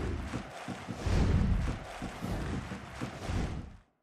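Logo sting sound design for an animated end card: deep bass hits swelling under a hissing whoosh, the strongest about a second in, fading out near the end.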